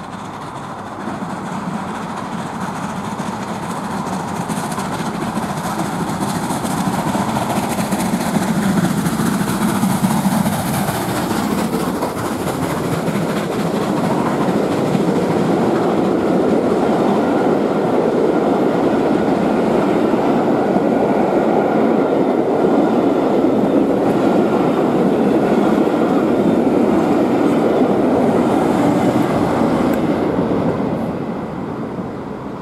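Bulleid 'Merchant Navy' class Pacific steam locomotive No. 35018 running through the station, growing louder over the first ten seconds as it approaches and passes. It is followed by a long train of coaches rolling past with a steady, loud wheel-on-rail noise.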